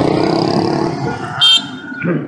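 Street traffic heard from a moving scooter, with a short, high-pitched vehicle horn beep about one and a half seconds in.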